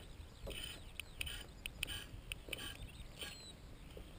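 Faint scattered rustles and clicks of a paramotor's harness and cage frame moving on the pilot's back, with the engine off.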